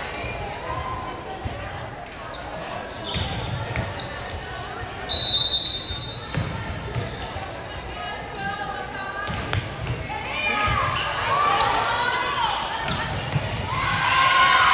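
Volleyball in a large gym hall: voices chatter, a referee's whistle blows once briefly about five seconds in to start the point, then the ball is struck in a rally with sharp smacks. Shouting rises in the last few seconds as the point is won.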